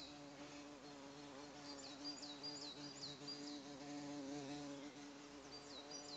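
Faint steady buzzing drone, wavering a little in pitch, with a bird's short high chirps repeating about twice a second over it.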